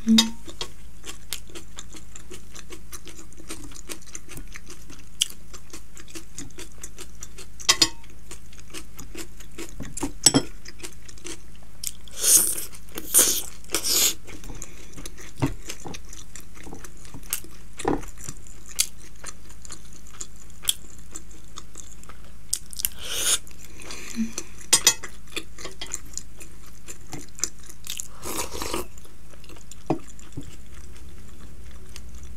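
Close-miked chewing with wet mouth sounds: scattered small clicks and a few louder smacking bursts, clustered around the middle and near the end. Now and then a steel fork taps against a glass bowl, over a faint steady low hum.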